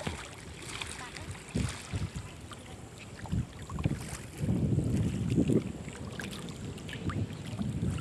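Floodwater sloshing and splashing as people wade through it, with wind buffeting the microphone. The loudest stretch of sloshing comes about halfway through.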